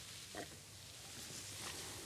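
Faint sounds of a man drinking from a glass and swallowing, with one clearer gulp about half a second in.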